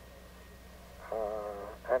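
Speech only: a man pauses for about a second over a faint steady hum, then gives a drawn-out hesitant 'uh' and starts to say 'and'. The voice comes over a telephone line.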